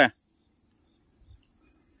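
Steady, high-pitched chirring of insects, holding one unchanging drone.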